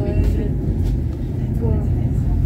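Steady low rumble of a funicular car running along its track, heard from inside the cabin, with people talking over it.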